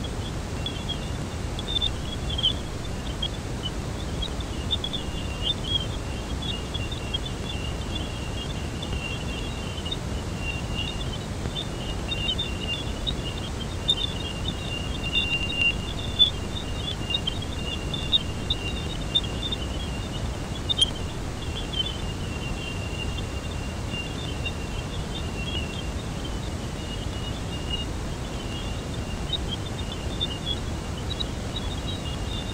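Jupiter's radio emissions, recorded by a spacecraft and converted to sound: a steady hiss with a continuous high band of short flickering chirps over a faint steady tone.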